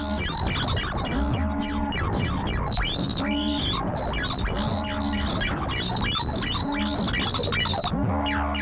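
Ciat-Lonbarde Plumbutter analog synthesizer playing live electronic noise music. Many quick chirps fall in pitch, a pitched tone comes back about every second and a half, and a steady low drone runs underneath.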